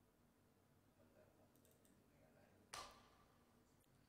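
Near silence, broken by one sharp click almost three seconds in, with a few faint ticks shortly before it.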